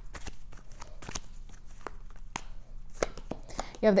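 Tarot cards being drawn from the deck and laid down on a cloth-covered table: a scatter of short clicks, taps and soft slides of card stock.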